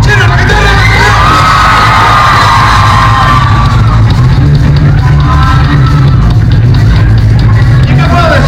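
A surf rock band playing live through a PA at full volume, with the crowd shouting and whooping over the music.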